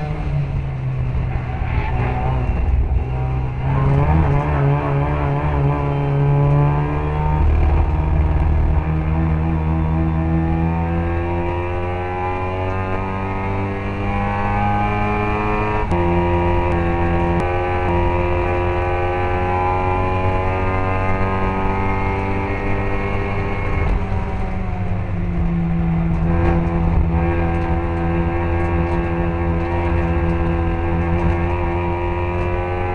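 Classic Mini race car's A-series engine at full racing effort, heard on board. Its note climbs slowly through the revs and drops sharply a few times, about 7 and 16 seconds in and again near 25 seconds, with each drop a gear change.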